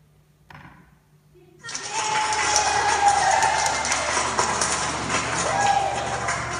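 A film's soundtrack played loudly through room speakers, music with voices, starting suddenly about a second and a half in after a near-quiet opening.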